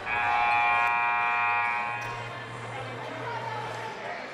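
Gymnasium scoreboard horn sounding one steady buzzing note for about two seconds, then cutting off, which signals the end of the break before the fourth quarter. A low hum and crowd murmur from the hall run underneath.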